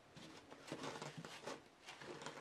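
Faint handling noises: soft rustles and a few light taps as small toy dinosaur figures are moved by hand over a paper set.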